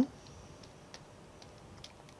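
A few faint, light ticks of a stylus tapping on a pen-tablet screen while writing and erasing handwritten notes.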